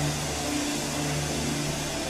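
A low, steady held chord from a worship keyboard pad under an even hiss of background noise.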